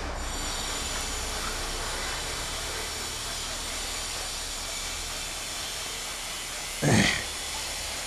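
Steady background hiss of an outdoor interview recording in a pause between speech, with a brief vocal sound from the man just before the end.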